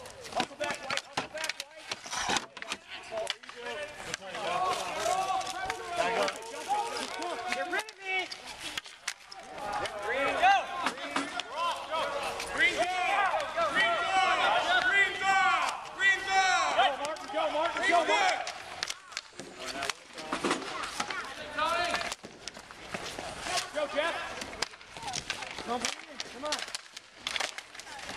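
Players' voices talking and calling out across the rink, loudest and most crowded in the middle, over a run of sharp clacks from hockey sticks hitting the ball and the concrete.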